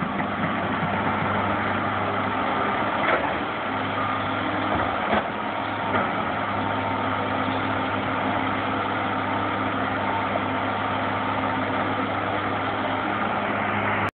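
Tracked hydraulic excavator's diesel engine running steadily as the machine digs, with two brief knocks about three and five seconds in.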